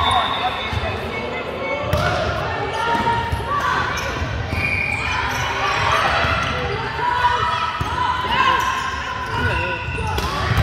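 Indistinct voices of players and onlookers calling across a large, echoing sports hall, with balls thudding on the wooden court now and then.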